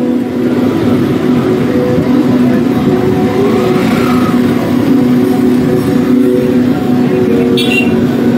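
A car driving slowly past close by, its engine running with a steady drone.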